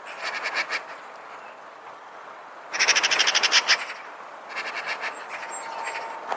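Eurasian magpie chattering: three bursts of rapid, harsh rattling, the loudest and longest about three seconds in.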